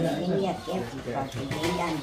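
A bird in a small wire cage calling with low coos, mixed with people's voices.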